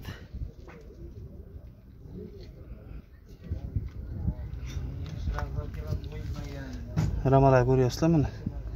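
Low, uneven rumble of handling and wind on the phone's microphone as it is moved beneath the truck, rising about three and a half seconds in. Near the end a man's voice sounds loudly for about a second, drawn out.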